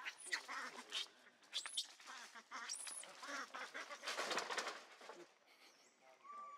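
Macaques screaming: a string of shrill, high calls, each rising and falling, then a harsher, denser scream about four seconds in that dies away near the end.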